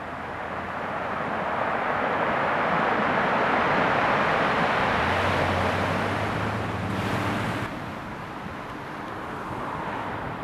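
Surf breaking and washing over a rocky shore, swelling to its loudest about three to four seconds in and dropping off sharply near eight seconds. A low steady hum sounds along with it for a few seconds before the drop.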